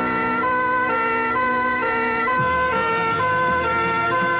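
Ambulance siren wailing in a two-tone pattern, stepping back and forth between a high note and a low note several times.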